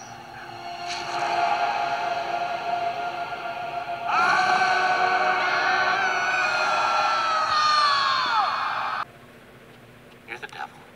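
Dramatic orchestral film score, then about four seconds in a long drawn-out scream that is held and drops away in pitch as it ends; the sound cuts off abruptly about nine seconds in.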